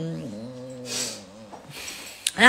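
A woman's voice making a drawn-out wordless hum that drops in pitch about a quarter second in and then holds low, with a short breathy hiss about a second in.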